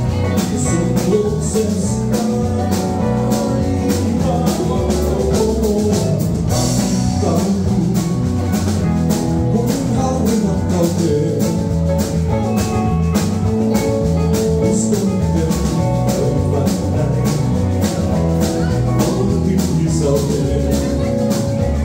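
Live rock band playing: electric guitars and a drum kit keep a steady beat, with a cymbal crash about six and a half seconds in.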